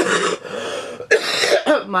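A woman coughing, two harsh coughs, the first at the start and the second about a second in. It is a lingering cough, which she puts down to the remnants of a chest infection.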